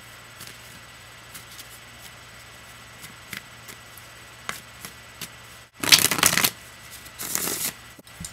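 A tarot deck being shuffled by hand: scattered light clicks of cards for most of the time, then two louder bursts of rapid card flicking, one about six seconds in and a shorter one about a second later.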